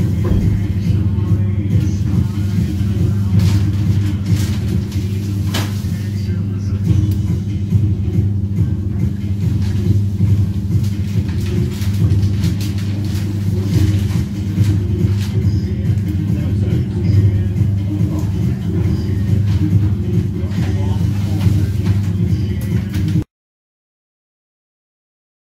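Steady, loud low hum of running machinery, with a few faint clicks; it cuts off suddenly near the end.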